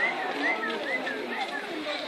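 Birds in a zoo aviary chirping: a run of short, clear chirps, about three a second.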